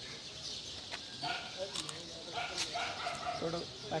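A dog barking repeatedly in the background, several short calls in a row, with people talking; a voice comes in near the end.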